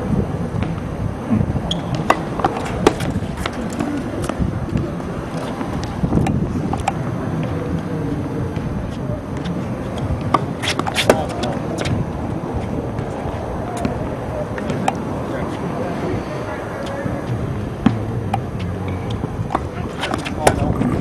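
Tennis balls struck by rackets and bounced on a hard court: scattered sharp pops, with a cluster of hits about ten to eleven seconds in, over a steady background of wind on the microphone and faint voices.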